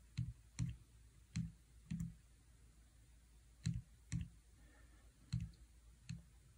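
Keys of an HP 15C Limited Edition calculator being pressed one at a time, each press a short click. There are four presses in the first two seconds, then after a pause of over a second three more.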